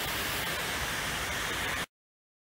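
Steady hiss of outdoor background noise on the trail that cuts off abruptly near the end into dead silence.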